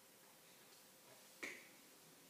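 A single short, sharp click about one and a half seconds in, over near silence.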